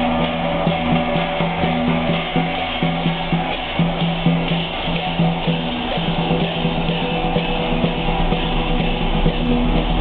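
Teochew grand gong-and-drum ensemble playing: held pitched notes over a steady percussive beat.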